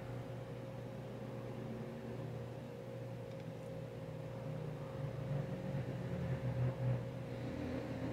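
A steady low machine hum with a faint constant whine above it, softer than the surrounding talk.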